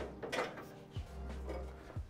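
Faint handling sounds of the DJ booth's aluminum top console being shifted into place on its rack: a soft rub near the start and a short click about a second in.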